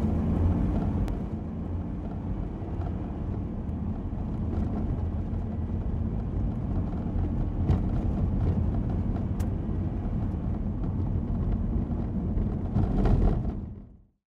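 A car driving, heard from inside: steady low road and engine rumble with a few faint ticks, fading out at the very end.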